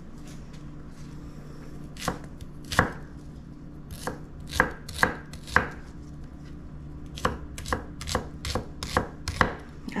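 Chef's knife chopping an onion on an end-grain wooden cutting board: sharp knife strikes on the wood, scattered at first, then a quicker run of chops in the last three seconds.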